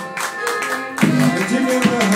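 Live blues played on strummed guitars, with a man singing into the microphone; the vocal comes in strongly about halfway through.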